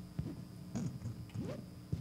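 A faint, distant voice from the audience beginning a question, heard off-microphone over a steady low hum in the hall.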